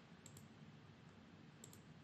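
Near silence with a few faint computer mouse clicks, one pair about a third of a second in and another near the end.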